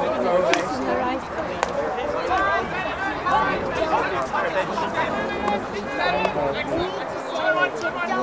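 Indistinct overlapping voices of players and people at the side of a hockey pitch calling out during play. A few sharp clacks cut through, typical of hockey sticks striking the ball.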